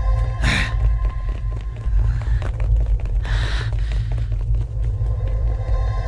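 Dramatic film-score music over a heavy, continuous low rumble, with two short noisy swells, one about half a second in and one just after three seconds.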